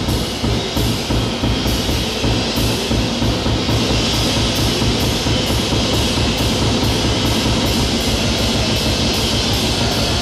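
Live small-group bebop jazz from an audience recording. The drum kit is to the fore, with regular strokes about two a second over a dense pulse of drum hits.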